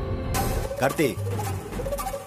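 Dramatic TV-serial background music with a voice over it, pitches sliding up and down about a second in.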